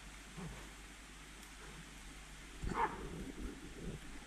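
Hunting dog barking in the forest: one short, louder bark about two-thirds of the way in, with fainter barks before and after it.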